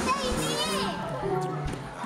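Excited, high-pitched voices calling out, strongest in the first second, with music underneath.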